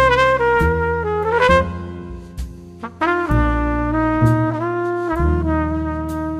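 Jazz trumpet playing the melody over piano, bass and drums: a held note that slides down and trails off, a rest of about a second, then a run of short stepping notes.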